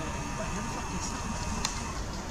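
Steady low outdoor rumble with faint voices in the background and one sharp click about one and a half seconds in.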